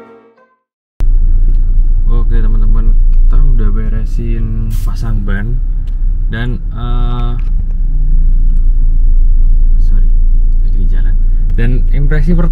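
Loud, steady low rumble of road and engine noise inside the cabin of a moving Toyota Fortuner on new Yokohama Geolandar A/T tyres. It starts suddenly about a second in, after the music fades out.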